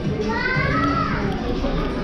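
A child's high-pitched drawn-out call that rises and then falls in pitch, over the murmur of other visitors in a large hall.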